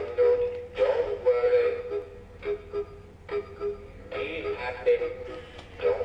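Big Mouth Billy Bass animatronic singing fish playing its song through its small built-in speaker: a tinny voice singing over a backing track, with a quieter stretch of a few short beats about halfway through.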